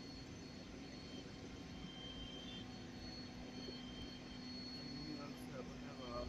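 A steady low machine hum under faint background noise, with faint voices near the end.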